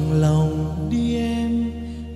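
Bolero song performance: a voice holding long, slightly wavering notes over a steady instrumental accompaniment, moving to a higher held note about a second in.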